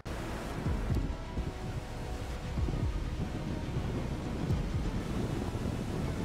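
Steady low rumble of rushing water and wind, with gusts of wind buffeting the microphone.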